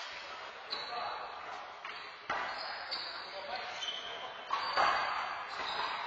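A handball rally: a rubber handball struck by hand and slapping off the court's wall and floor, several sharp hits that ring in the hollow court, the loudest about four and a half seconds in.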